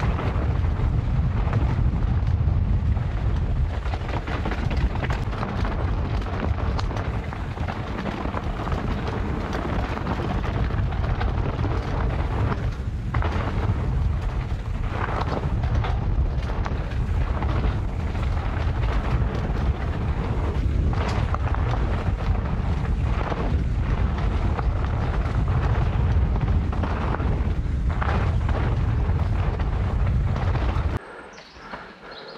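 Wind buffeting the microphone and tyres rumbling on a dirt singletrack as a mountain bike descends at speed, with scattered short knocks and rattles from the bike over bumps.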